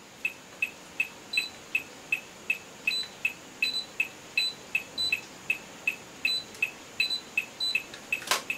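Electronic metronome beeping a steady beat, a little under three beats a second, with occasional higher-pitched beeps mixed in among the regular ones.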